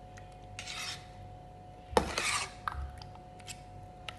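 Metal spoon scraping against a stainless steel bowl while stirring custard: a short scrape about half a second in, then a sharp clack and a longer scrape about two seconds in, with a few light taps after.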